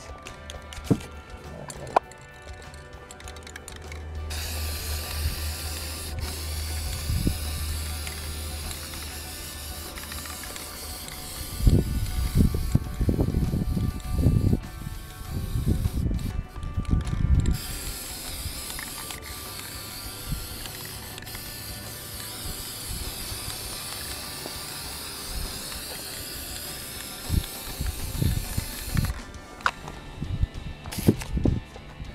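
Aerosol spray paint cans hissing in two long sprays, the first starting a few seconds in and the second after a short break near the middle. Low thumps and rumbles come in the middle.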